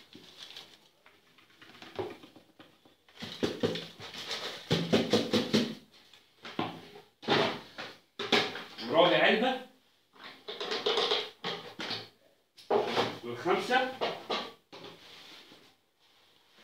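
A person's voice in melodic phrases a second or two long, with short pauses between, starting about three seconds in.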